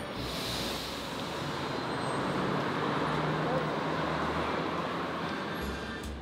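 City street traffic noise, a vehicle passing that swells to its loudest a few seconds in and then eases off.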